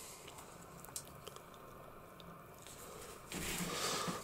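Faint handling of small plastic action-figure parts in the fingers, light rubbing and ticking with a small click about a second in, growing a little louder near the end.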